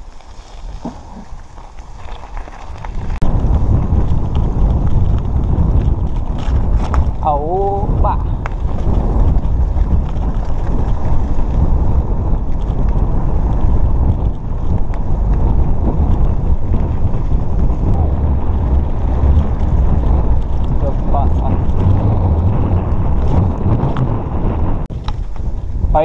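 Wind buffeting the microphone of a camera on a moving mountain bike, with tyre noise on a dirt road: a steady low rumble that comes up loud about three seconds in.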